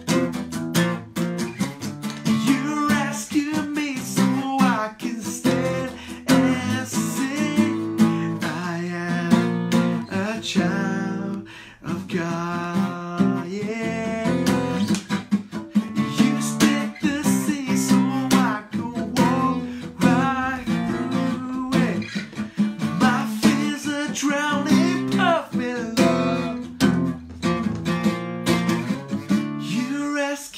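Takamine acoustic guitar strummed in a steady rhythm of chords, with a man singing along.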